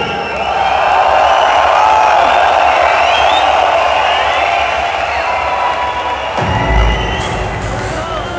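A large crowd cheering and screaming in a big hall. About six and a half seconds in, a deep bass sound from the music comes in under the cheering.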